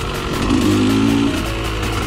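Music mixed with a 2013 KTM 125 SX's two-stroke single-cylinder engine running as the dirt bike is ridden.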